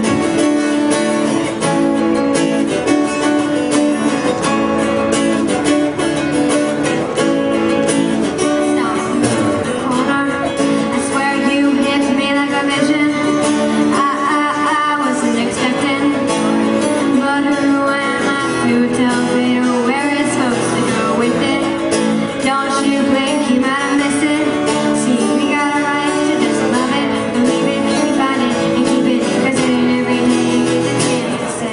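Two acoustic guitars strumming and picking a song together, amplified on stage, with a voice singing over them.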